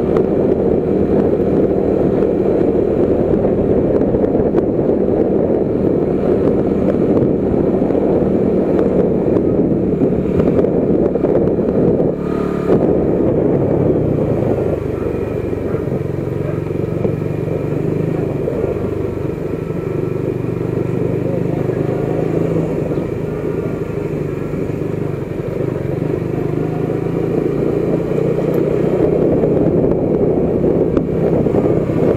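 Motorcycle engine running as the bike rides along, heard from the rider's seat with a rush of wind noise. A short knock comes about twelve seconds in, after which the engine settles to a slightly quieter, steadier note.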